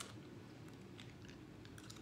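Candid clear plastic aligner tray being pried off the teeth with the fingers: a few faint, scattered clicks, a sound called terrible.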